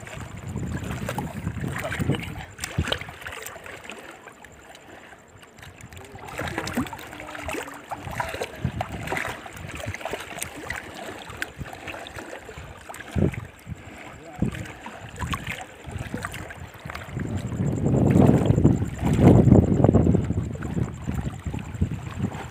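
Shallow water lapping and splashing around rocks and a hand held in the water, with a few small knocks. Wind rumbles on the microphone, loudest a few seconds before the end.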